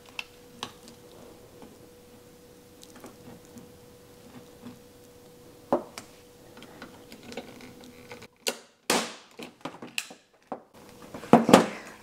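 Faint clicks and taps of a hand-held manual staple gun being positioned and fired into a magnetic frame's wooden bar, over a faint steady hum. The loud staple shot is muted, so only a few short clipped bursts with dead silence between them are heard about eight to ten seconds in, followed by a knock near the end.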